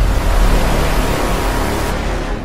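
Channel logo sting sound effect: a loud rushing whoosh with a deep rumble underneath, slowly fading.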